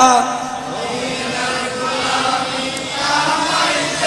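Many men's voices chanting a devotional refrain together, blurred and softer than the solo singing on either side.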